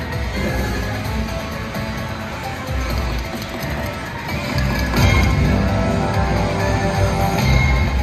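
Video slot machine playing its free-spins bonus music and jingles while the reels spin, over the casino's background din; it gets louder about five seconds in.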